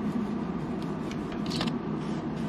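A small bendable pipe-cleaner brush scratching burnt-on potato crumbs out of a waffle maker's nonstick grid: soft, irregular scrubbing with a sharper scrape about a second and a half in, over a steady low hum.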